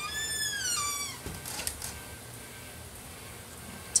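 Door hinge squeaking as a door is swung shut: one high squeal lasting about a second that rises and then falls in pitch. A few faint clicks follow.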